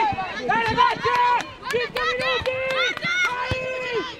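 Loud shouting of encouragement in Italian at a soccer match, in long held cries, with a few sharp knocks in between.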